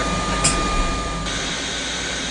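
Whole-body cryotherapy cabin blowing liquid-nitrogen-chilled air: a steady hiss over a low hum. A thin whistling tone stops about halfway through, and the hiss then grows brighter.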